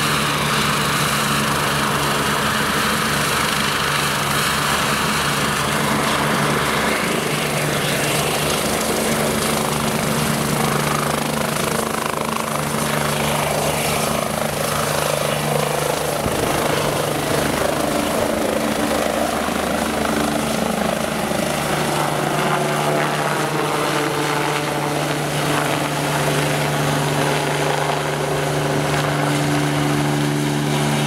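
BK 117 B2 air-rescue helicopter lifting off and climbing away, its twin turboshaft engines at full power. The rotor beats steadily over the turbine whine, with a fast low rotor beat clearest in the first several seconds.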